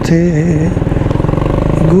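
Motorcycle engine running while being ridden in traffic, its note swelling briefly and falling back in the middle, with the rider's voice just before and after.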